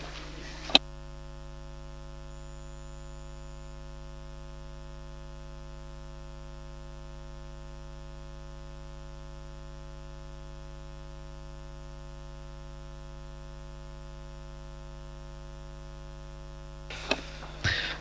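Steady electrical mains hum in the sound-system audio feed, with a single sharp click about a second in.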